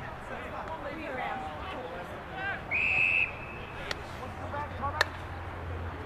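A field umpire's whistle gives one short, steady, high blast about halfway through, among players' calling voices. A sharp knock follows near the end.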